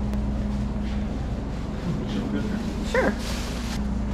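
Steady low hum in a café dining room, with a single short high whine that falls in pitch about three seconds in.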